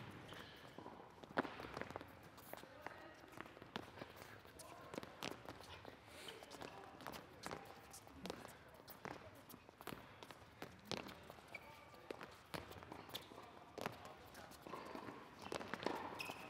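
Faint, irregular footfalls and landings of several people jumping over low hurdles and cross-stepping on an indoor court surface.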